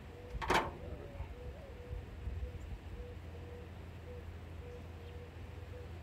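One sharp snap about half a second in from a hand wire stripper working on the cut power cable. Under it runs a low steady outdoor rumble, and a bird calls repeatedly in the background.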